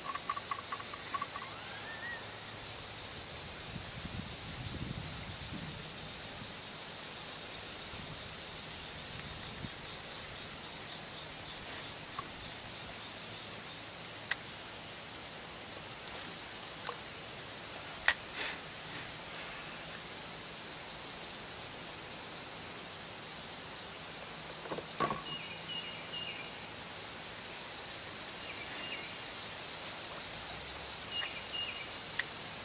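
Quiet swamp ambience: a steady high-pitched insect drone, with a few short bird chirps near the end. Occasional sharp clicks and knocks break through, the loudest a little past the middle.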